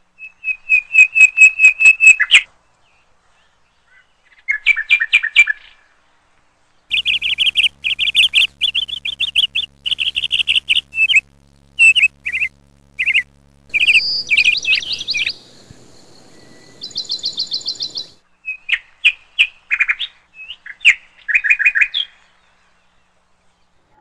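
Caged pet finches and parakeets chirping in short bouts of quick, high, repeated notes with silent gaps between, starting and stopping abruptly. A faint steady hum runs under the middle part.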